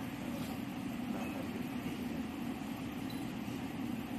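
A steady low hum runs evenly throughout, with no distinct sounds standing out above it.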